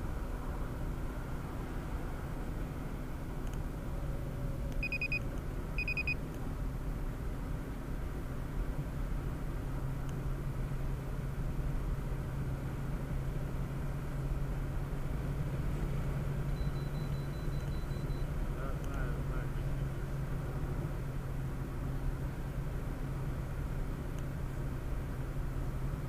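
Steady road and engine noise heard inside a car's cabin at highway speed, with a low engine hum that grows stronger about ten seconds in as the car speeds up. Two short high beeps sound about five and six seconds in.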